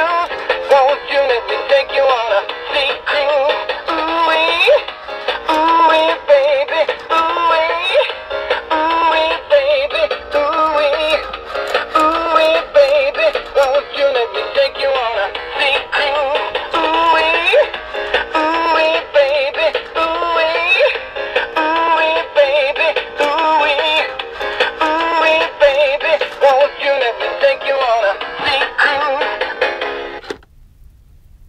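Animatronic singing lobster toy playing a 1950s-style rock and roll song through its small built-in speaker. The sound is thin and tinny, with no bass, and the song cuts off suddenly at the end.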